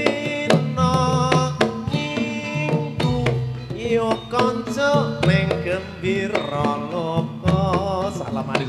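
Live jaranan gamelan music: kendang hand drums beating with percussion under a melody line that bends and wavers in pitch.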